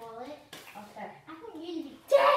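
Children talking quietly, the words indistinct.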